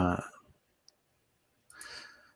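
A man's brief 'uh', then near silence broken by a single faint click about a second in and a short, soft breathy hiss near the end.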